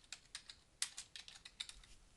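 Computer keyboard typing a short name, a quick irregular run of about a dozen key clicks.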